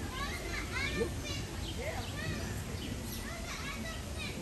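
Indistinct chatter of many people with children's voices among them, a crowd of overlapping high calls and talk with no words that stand out.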